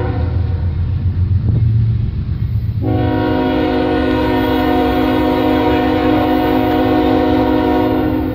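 CSX freight locomotive's air horn sounding as the train approaches: a low diesel rumble for about three seconds, then one long horn chord held steady for about five seconds.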